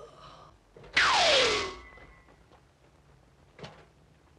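Movie ray-gun shot sound effect: a loud hiss lasting under a second with a whistle that falls in pitch, about a second in. A short sharp click follows near the end, after a brief groan at the very start.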